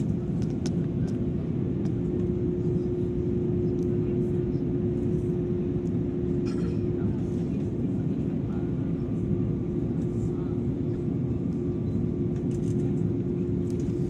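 Steady low drone of an airliner cabin on its landing approach: engine and airflow noise with a steady hum-like tone held through it.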